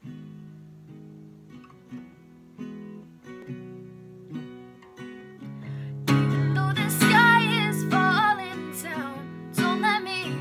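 Acoustic guitar with a capo played softly at the song's opening, one chord plucked about every second, then strummed harder from about six seconds in as a young woman's singing voice comes in over it.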